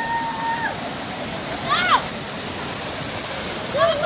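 A fast, swollen stream rushing steadily over a rock ledge in a small cascade. People's voices shout over it: a long held call at the start and a short rising-then-falling yell about two seconds in.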